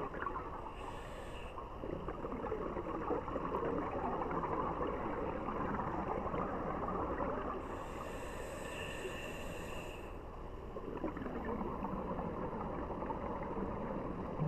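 Scuba diver breathing through a regulator underwater: a short hissing inhale, a long stretch of crackling exhaled bubbles, then a second, longer hissing inhale about eight seconds in and another bubbling exhale.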